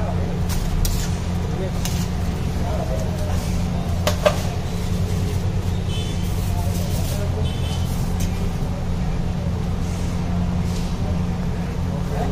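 Street-stall cooking on a large flat iron griddle: light metal clinks of a spatula on the pan, with one sharp clink about four seconds in, over a steady low rumble and background chatter.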